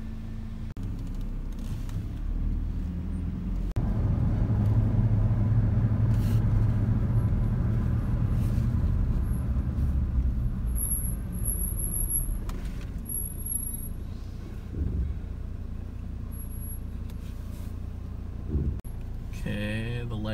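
Truck engine and tyre noise heard from inside the cab as it drives slowly along a road. The rumble grows louder about four seconds in, then eases off in the second half.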